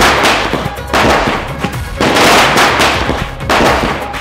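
Firecrackers bursting on the ground at close range: a run of loud crackling blasts, a new one about every second.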